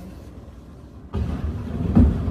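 Low rumble of a runaway cargo jet rolling across the apron. About a second in, it jumps suddenly to a much louder low rumble that peaks near the end, as the jet reaches the building.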